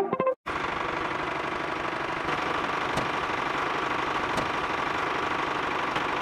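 Small electric motor of a homemade toy tractor running steadily with a fine rattling drone and a faint whine, and two light clicks partway through. Background music cuts off just before it starts.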